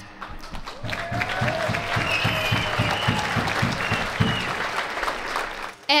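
A large crowd applauding. The applause starts just after the start and dies down shortly before the end.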